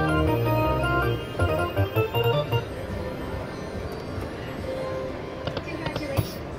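Electronic music from an Iron Man themed video slot machine as its reels spin: sustained chords, then a run of short blips, dropping away after about two and a half seconds to leave a steady casino background hum.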